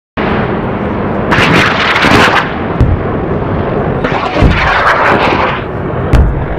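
Electric crackling-and-rumble sound effect, like lightning with thunder, starting abruptly and running loud, with two stronger crackling surges and a few deep booms.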